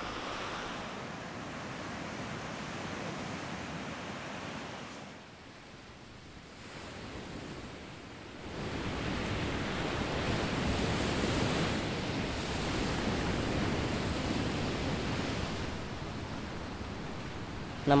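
Ocean surf washing onto a beach, a steady rush of waves. It drops quieter for a few seconds in the middle, then grows louder about eight seconds in as small waves wash up the sand.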